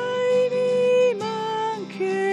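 A hymn sung at Mass: a voice holds long notes, each about a second, stepping down in pitch.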